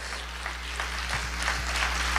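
A church congregation applauding, the clapping slowly growing louder.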